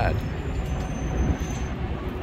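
Wind buffeting the microphone, heard as a low, uneven rumble.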